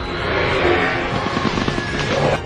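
Film battle soundtrack: a swell of noise in the first second, then rapid low thuds under music.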